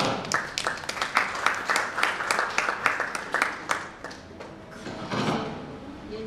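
A small group of people clapping, irregular claps a few per second that die away about four seconds in.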